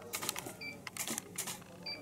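Digital SLR camera giving short focus-confirmation beeps, twice, with sharp shutter clicks after them as frames are taken.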